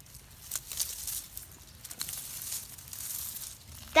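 Old garlic chive leaves being pulled out of a container by hand: irregular crinkling and tearing with a few small snaps.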